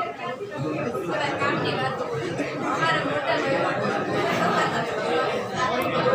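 A roomful of students chattering at once, many overlapping voices with no single speaker standing out.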